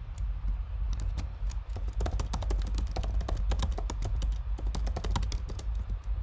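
Typing on a computer keyboard: a few scattered keystrokes, then about a second in a fast, dense run of key clicks that lasts several seconds. A steady low hum runs underneath.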